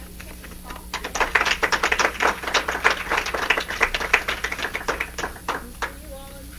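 Audience applauding: many people clapping, beginning about a second in and dying away just before the end.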